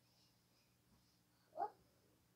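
Near silence, broken by one short squeak-like vocal sound about one and a half seconds in.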